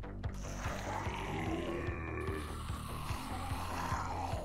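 Online slot game's background music with a steady low beat.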